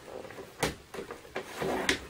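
Paper trimmer's blade carriage clicking and sliding along its track as a score line is pressed into cardstock: a sharp click about half a second in, then a short scraping slide ending in another click near the end.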